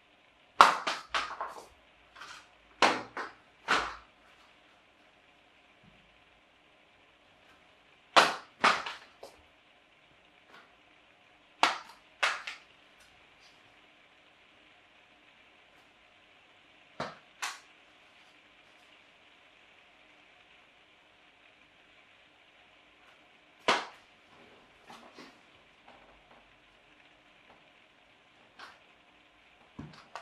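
Sharp taps and clicks in small clusters every few seconds, with quiet between: paper hoop gliders being thrown and striking hard surfaces.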